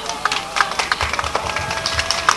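Scattered audience hand-clapping: irregular individual claps, with faint voices murmuring underneath.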